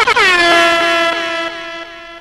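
A DJ-style air horn sound effect: a loud, held horn tone retriggered several times in quick succession with an echo, dying away toward the end.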